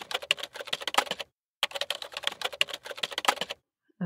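Rapid typing on a computer keyboard: two quick runs of keystrokes with a short pause between them, stopping shortly before the end.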